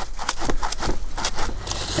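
Small handsaw sawing lengthwise down the centre of a section of banana pseudostem, in a quick run of uneven back-and-forth strokes.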